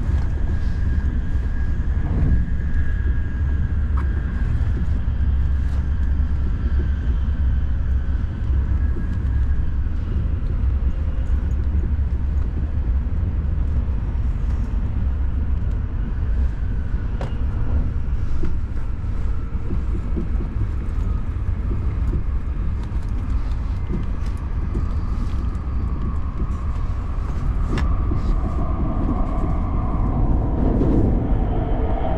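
Shinkansen bullet train running at speed, heard from inside the passenger cabin: a steady deep rumble of wheels on track, with a faint steady high whine through the first few seconds and a few light clicks.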